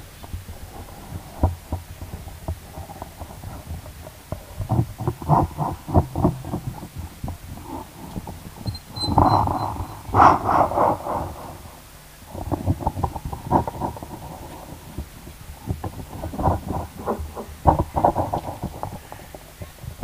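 A man weeping close to a microphone: irregular sobs and caught breaths, with louder choked cries about halfway through.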